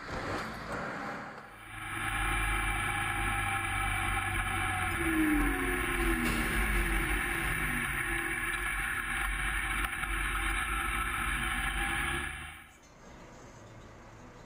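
Steady, loud running of a vehicle moving through a road tunnel, with a lower engine note falling in pitch midway. It starts and stops abruptly with the tunnel footage.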